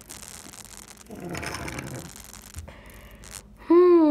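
A small toy engine pushed by hand scrapes across a wooden floor, a rough rustle lasting about a second and a half that starts about a second in. A child's voice begins just before the end.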